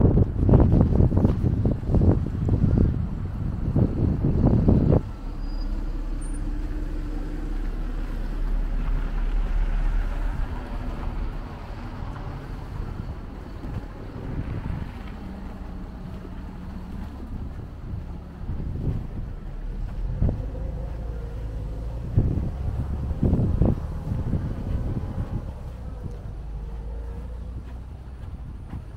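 Street traffic going by on a snowy road, with wind buffeting the microphone in heavy gusts for the first five seconds and again a little past the twenty-second mark. A steady low engine rumble runs for several seconds after the first gusts.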